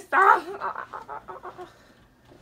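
A person's voice: a loud excited cry, then a run of cackling, laugh-like pulses, about seven a second, fading out.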